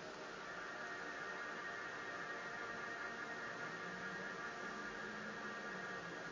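Steady low hiss with a faint hum, the background noise of the recording, with no clicks or other events.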